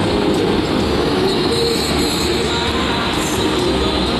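Bellagio fountain's water jets spraying across the lake, a steady, dense rushing of water.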